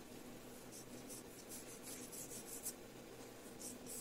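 Pencil sketching lightly on tinted paper: a faint run of short strokes from about a second in until nearly three seconds, then a few more near the end.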